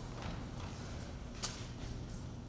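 Footsteps on a stage floor as a performer walks off, with one sharper knock about one and a half seconds in, over a low steady room hum.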